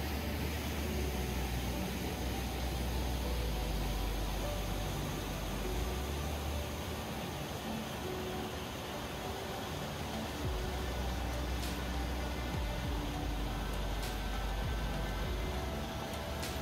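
White-water rapids churned up by a 10-foot drop, rushing steadily, with faint background music over them.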